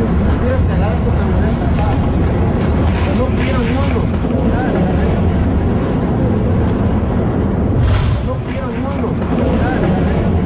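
Sea surf on the shore: a steady low rumble of waves, with faint, indistinct voices now and then.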